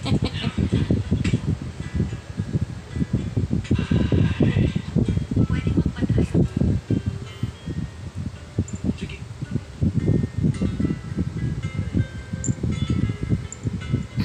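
Background music with a plucked guitar and a steady low beat.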